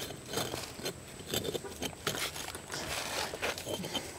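Loose clay patio bricks scraping and knocking faintly as they are pried up by gloved hands out of their bed of sand, in scattered small clicks and grating sounds.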